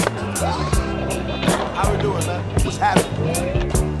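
Soundtrack music: a song with a steady, quick drum beat, held chords and a sung vocal line.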